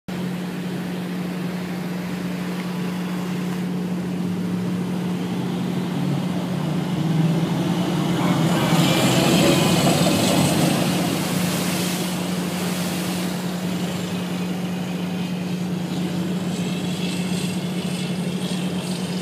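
Steady low drone of amphibious vehicle engines running in the water. It swells into a louder rush of engine and churning water for several seconds in the middle, as a vehicle passes close below.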